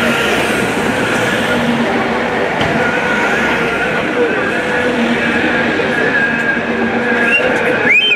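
Crowd voices mixed with the running of a slow convoy of vehicles, with a few short rising-and-falling whistle-like tones near the end.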